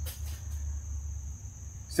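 Room tone: a steady low hum with a constant thin high-pitched whine, and a faint click right at the start.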